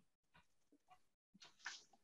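Near silence on a video-call line, with a few faint, brief sounds; the clearest comes about a second and a half in.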